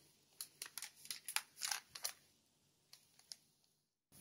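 Faint crinkling and ticking of a plastic-bagged puzzle package being handled: a quick run of small rustles in the first two seconds, then two more light ticks.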